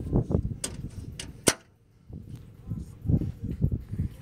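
Wind buffeting the microphone in uneven gusts, with a few sharp clicks; the loudest click comes about one and a half seconds in, followed by a brief lull.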